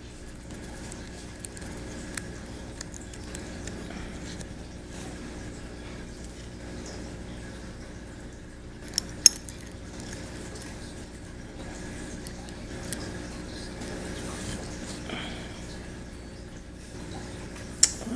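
Small metal parts of a Ruger 10/22 trigger housing being handled as the magazine release lever is fitted: light metallic clicks and ticks, with two sharper clicks close together about halfway through, over a steady low background hum.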